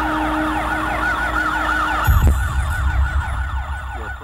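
Several motorcade sirens wailing in a fast yelp, their pitch rising and falling about five times a second, over the rumble of traffic. About two seconds in, a deeper vehicle rumble swells.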